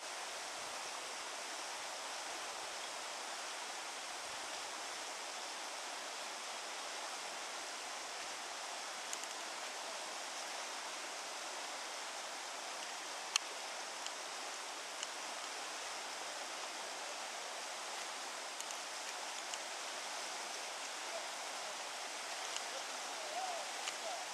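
River water running over shallow rapids, a steady hiss, broken by a few faint clicks, one sharper about halfway through.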